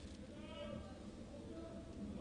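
Faint shouts from players on the football pitch, a call about half a second in and another around a second and a half, over a low steady stadium background.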